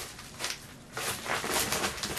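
Scissors snipping through a plastic mailing bag, with several short crinkles of the plastic. The cutting goes slowly: the scissors cut poorly.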